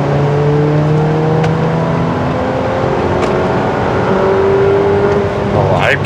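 Jeep Renegade 2.4's four-cylinder engine, heard inside the cabin, revving under acceleration at highway speed: its note climbs steadily, dips a little about two seconds in, then climbs again, the revs shooting up.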